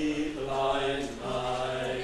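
Unaccompanied folk singing by a small group of mixed male and female voices in harmony, with long held notes that shift to a new chord about a second in.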